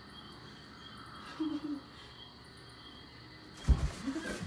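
Quiet room tone with faint steady hiss, a brief low murmur from a woman about a second and a half in, and a single dull thump near the end.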